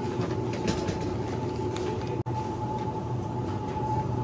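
Steady supermarket background noise: a low hum with a constant thin tone over it, the drone of refrigerated display cabinets and store equipment. It cuts out for an instant about two seconds in.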